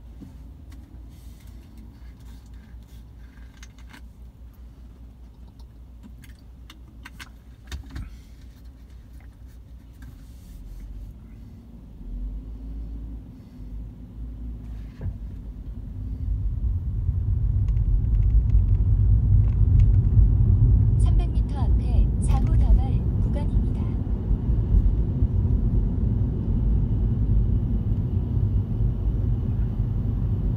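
Road and tyre rumble heard inside a Tesla's cabin, with no engine note since the car is electric: quiet while stopped, then swelling about halfway through as the car pulls away and gathers speed. A short run of rattling clicks comes about two-thirds of the way in.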